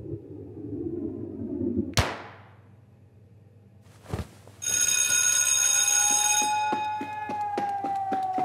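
One sharp smack about two seconds in, a hand hitting a volleyball. A little over two seconds later an electric school bell starts ringing loudly and keeps ringing, its hammer beating rapidly.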